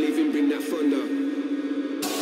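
Drum and bass mix in a breakdown: a held synth drone with no drums or deep bass, and a voice sample over it.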